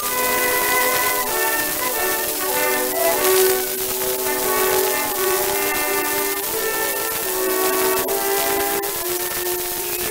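Orchestra accompaniment playing a melody from a 1920 Columbia 78 rpm shellac record of a tenor duet, an acoustic-era recording. A steady surface hiss from the disc runs under the music.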